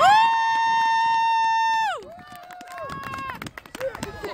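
A person's long, loud, high-pitched shout, held at one pitch for about two seconds and sliding down at the end, followed by shorter, quieter calls.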